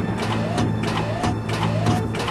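Cartoon soundtrack of sound effects and background score: a steady low hum under short rising electronic chirps, about two or three a second, with scattered sharp clicks.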